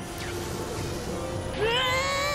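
Background music, then about one and a half seconds in an animated boy's drawn-out, high-pitched yell of fright starts, wavering in pitch, as he falls into a magic portal.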